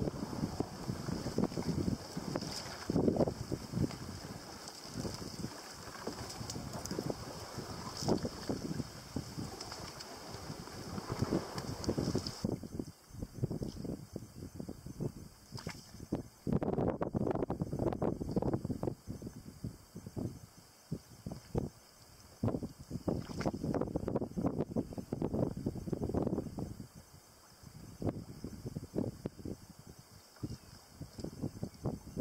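Wind buffeting the microphone in uneven gusts, over water lapping around a fibreglass mokoro canoe being poled along. A steady high-pitched hum sits above it and stops abruptly about twelve seconds in.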